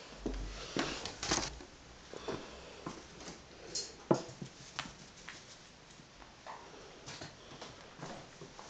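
Irregular light taps and patter as a caique parrot hops about and knocks a ping-pong ball across a woven mat. The loudest tap comes about four seconds in.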